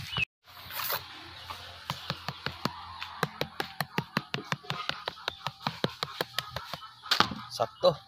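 A knife blade tapping rapidly on the hard skin of a whole roasted pig (lechon) through its plastic wrap: a long run of sharp, evenly spaced taps, about four or five a second.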